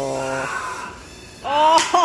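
A person's drawn-out "ohh" exclamation, its pitch sinking slowly, that stops about half a second in; after a short lull, another rising vocal exclamation starts near the end and breaks into laughter.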